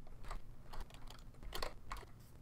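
Typing on a computer keyboard: a run of irregular key clicks, the loudest two near the end.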